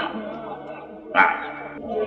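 A man's voice from an old sermon recording: a brief sound at the start, then one drawn-out vocal sound about a second in, over a steady low hum.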